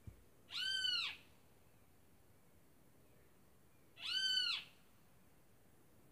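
Two short animal calls about three and a half seconds apart, each rising and then falling in pitch.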